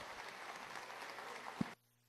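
Applause and crowd noise in a large chamber, an even noise with a single short knock, cutting off abruptly near the end.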